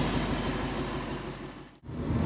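A car engine idling steadily, fading out toward the end.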